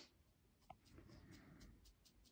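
Near silence: room tone with a few faint ticks as bread dough is lifted and stretched by hand.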